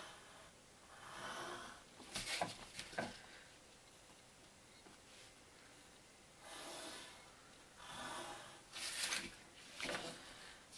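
Pencil drawing lines on cardboard against a plastic set square: a handful of short, scratchy strokes with a few light knocks as the square is shifted.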